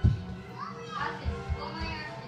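Small children's voices playing over steady background music, with a single thump right at the start.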